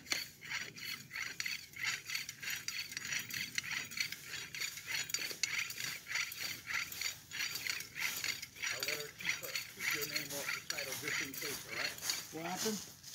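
A hand-operated ratcheting jack being worked at a car's rear wheel, its ratchet clicking steadily about three or four times a second.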